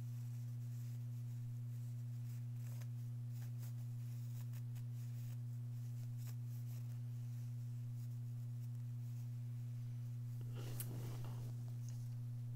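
A steady low hum throughout, with faint small clicks and fabric handling as a closed metal hemostat pokes out the corners of a sewn cotton pocket. A brief rustle of fabric comes near the end.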